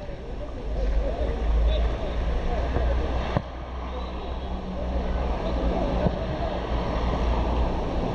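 Wind rumbling on the microphone over an open training pitch, with faint voices. A single sharp thud of a football being kicked comes about three and a half seconds in.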